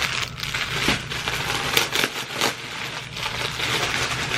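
Clear plastic poly bag crinkling as a garment is handled and pulled out of it, in an irregular run of crackles.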